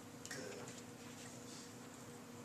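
Faint, irregular clicks and rustles of paper raffle tickets being stirred and drawn by hand from a plastic bowl, over a steady low room hum.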